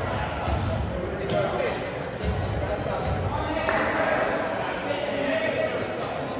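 Echoing gymnasium with voices talking and a few irregular low thuds of a ball bouncing on the hardwood floor.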